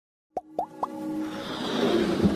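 Animated logo intro sound: three quick rising plop sound effects about a quarter second apart, followed by a swelling electronic build-up of music.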